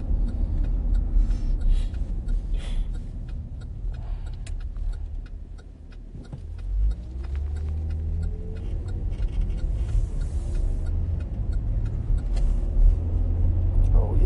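Low rumble of a car driving, heard from inside the cabin. It eases off about five to six seconds in, then builds again.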